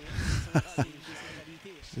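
A person's voice in a few short exclamations that fall in pitch.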